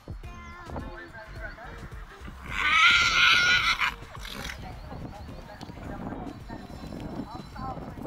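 A grey horse under saddle whinnies once, loudly, for about a second and a half, starting about two and a half seconds in. It is calling out of excitement at being back out competing.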